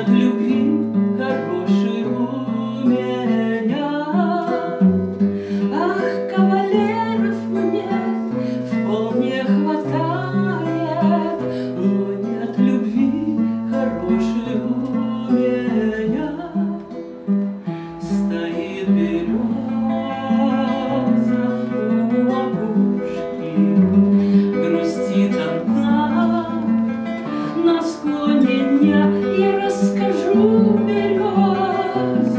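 A woman singing a Russian song to her own classical guitar accompaniment, the guitar keeping a steady pattern of low bass notes under the melody.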